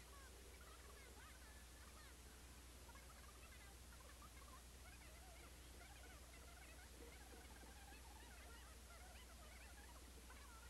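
Near silence: a faint steady hiss and low hum, with faint short warbling chirps scattered throughout.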